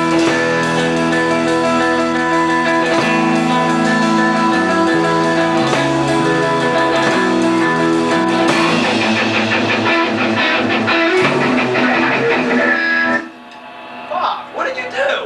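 Electric guitar playing loud held chords, changing to quicker strummed chords a little past halfway, then stopping suddenly about a second before the end.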